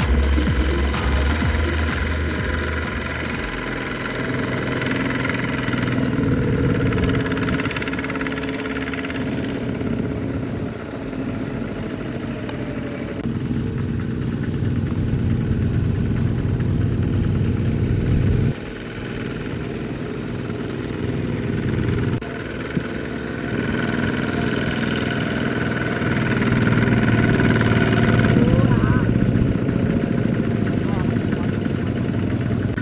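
Kubota ZT120 walking tractor's single-cylinder diesel engine running under load, pulling a loaded trailer through a muddy rice field. Its level dips suddenly twice past the middle.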